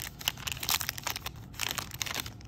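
Foil wrapper of a Magic: The Gathering Kaldheim draft booster pack crinkling and tearing as it is ripped open by hand, in irregular crackles.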